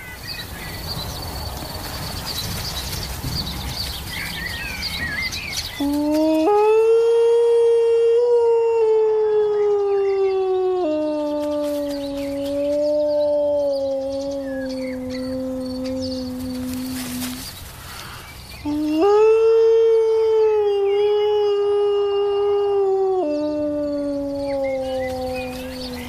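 A man imitating a wolf howl through cupped hands to call young wolves. There are two long howls, each stepping up to a held high note and then dropping to a lower held note.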